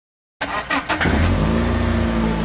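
Logo-intro sound effect: after a brief silence, a few quick whooshes, then from about a second in a loud, low, steady car-engine sound.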